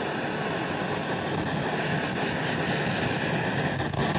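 Handheld butane kitchen torch burning with a steady hissing flame, caramelizing turbinado sugar on top of oatmeal.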